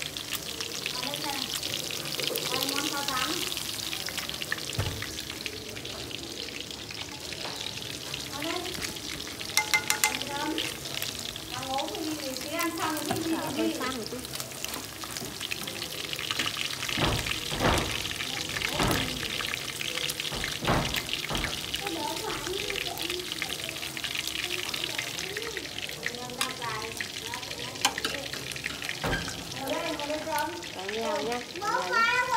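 Catfish pieces frying in hot oil in a wok, a steady sizzle throughout, with a few sharp knocks around the middle.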